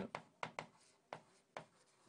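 Stylus writing on an interactive display screen: about five faint, short taps and scrapes spread over two seconds.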